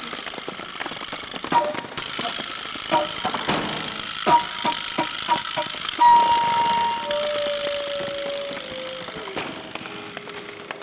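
Live flute and hand-percussion music. Rattling and sharp clicking percussion strikes fill the first half. From about six seconds the flute holds a long high note, then a lower note that slides downward near the end.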